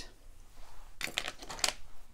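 A quick run of light clicks and scrapes about a second in, lasting under a second: a paintbrush tapping and scraping on a palette as paint is picked up and mixed.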